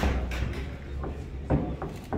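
Sharp thumps from a boxer's footwork and movement on the ring floor while shadowboxing. The loudest comes about one and a half seconds in, with a smaller one just after, over a low rumble.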